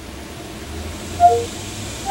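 A short two-note descending electronic chime from the Cortana voice assistant about a second in, marking that it has taken the spoken command, over a steady low hum.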